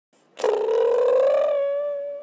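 Intro sound effect for an animated logo: one long buzzy, fluttering note that starts about half a second in, rises slightly and then holds steady.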